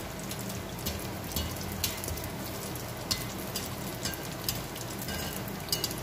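A neyyappam deep-frying in hot oil: a steady sizzle with many scattered crackles and pops.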